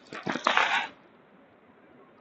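A short rustling crackle close to the microphone, under a second long, near the start.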